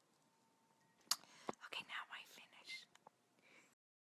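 A woman whispering softly, close to the microphone, starting about a second in, with a couple of sharp clicks near its start; the sound cuts off suddenly just before the end.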